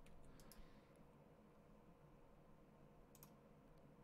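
Near silence with room tone and a faint steady hum, broken by a few faint computer mouse clicks, about half a second in and again after about three seconds.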